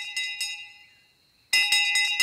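A small handbell rung rapidly over and over. The ringing fades to near silence about a second in, then starts again loudly about a second and a half in.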